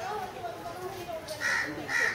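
A crow cawing twice near the end, two short loud calls about half a second apart, over a background murmur of people's voices.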